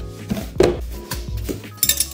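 Metal tube legs of a guitar charging stand clinking against each other as they are lifted from their box, with a few sharp clinks near the end, over steady background music.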